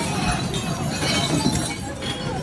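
Glass bottles clattering and shattering inside a large tipped-over glass-recycling bin as it is rolled along the street, over a low rumble from the bin moving on the asphalt.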